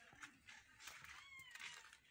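A faint, brief cat meow about a second in, falling in pitch, over otherwise near silence.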